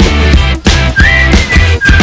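Background music with a steady beat and bass, carrying a whistled melody: a short rising phrase about a second in, then a held note near the end.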